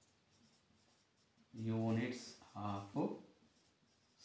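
A man's voice says two short phrases about halfway through, with faint writing sounds in a small room.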